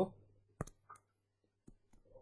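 A few faint, short clicks: a stylus tapping on a touchscreen while a digit is handwritten.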